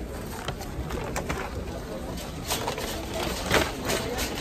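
Busy shop ambience: background voices, and a paper shopping bag rustling as it is lifted and carried, with one sharper, louder sound about three and a half seconds in.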